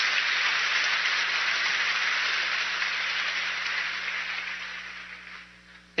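Congregation applauding: a steady clatter of many hands clapping that dies away over the last second or so.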